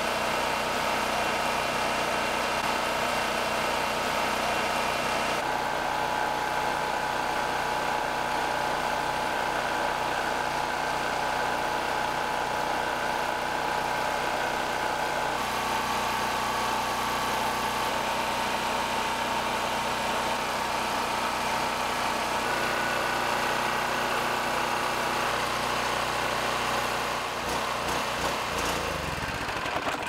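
Small single-cylinder gasoline engines running steadily at governed speed: a push lawn mower's engine, then a Predator portable generator's engine. Near the end the mower engine sputters and dies as it runs out of fuel.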